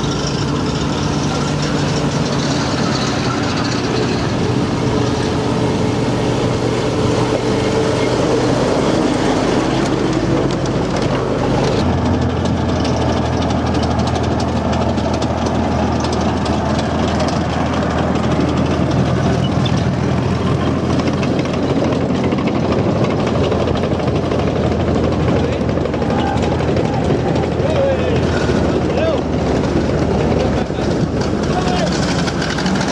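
Military vehicles driving along a dirt track: a WWII jeep's engine with more vehicles following. About twelve seconds in, after a cut, the steady low engine note of an OT-90 tracked armoured carrier (the Czech BMP-1) takes over, with indistinct voices in the background.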